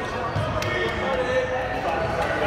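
Indistinct voices and chatter in a large gymnasium, with one sharp knock a little over half a second in.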